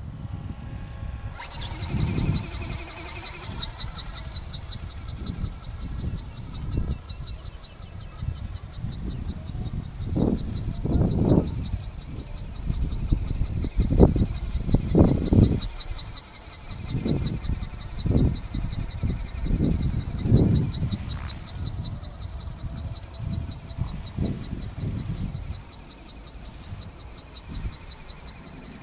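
Wind buffeting the microphone in irregular low gusts, loudest in the middle, over a steady high insect buzz that sets in about a second in.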